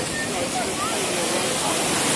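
Ocean waves breaking and washing through shallow surf, a steady rush of water.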